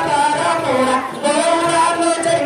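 A high-pitched voice singing a Danda Nacha folk song into a microphone, the melody moving from note to note, with a short break in the line just after a second in.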